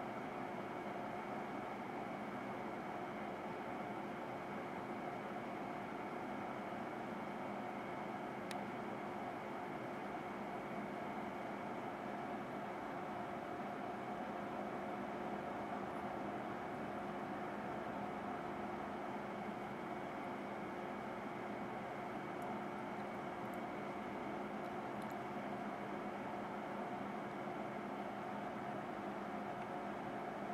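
Toaster reflow oven running with a steady hum while it heats a circuit board through the soak stage toward reflow, with one faint tick about eight seconds in.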